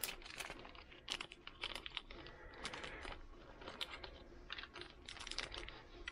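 Hands fiddling with small parts and a strip of tape: a fast, irregular scatter of faint light clicks and crinkles.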